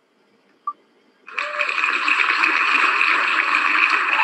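A single click, then about a second in a recorded applause sound effect from the wheelofnames.com spinner starts suddenly and runs on steadily, marking that the wheel has stopped on a winner.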